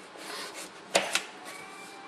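Potato slices and a kitchen knife handled on a plastic cutting board: a brief rubbing scrape, then two sharp knocks close together about a second in.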